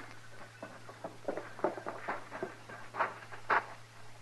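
Radio-drama sound effects of a man climbing down from a stagecoach and stepping away: about six irregular footsteps and knocks over a steady low hum from the old recording.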